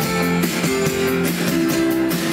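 Live pop-rock band playing an instrumental passage between sung lines: strummed acoustic guitars over held keyboard notes, with a steady drum beat.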